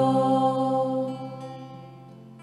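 Two women's voices holding a final sung note over acoustic guitar, fading out about a second in and leaving the guitar's notes ringing.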